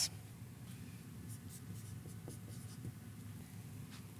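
Dry-erase marker writing on a whiteboard: a few faint, short strokes over a low room hum.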